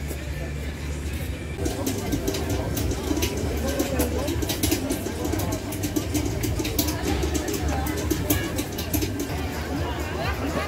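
Hot oil crackling in a churro deep fryer as dough is piped in, heard over background music and the chatter of a market crowd.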